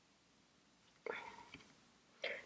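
Near silence, broken about halfway through by a short, faint whisper from a woman.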